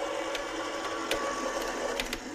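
Electric die-cutting machine running, its motor humming steadily as it rolls a die and cardstock through, with a few faint clicks.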